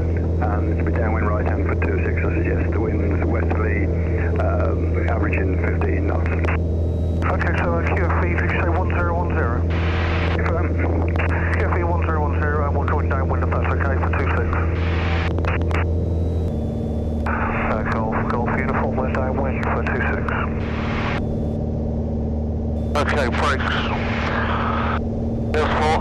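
Cabin drone of a Piper Warrior II's four-cylinder Lycoming engine and fixed-pitch propeller in cruise flight. About two-thirds of the way through the engine note changes and drops slightly in level. Thin-sounding voices talk over it for much of the time.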